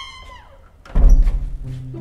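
Comedy sound effects: a falling whistle-like glide, then a deep boom about a second in that rings on low, followed by a few music notes.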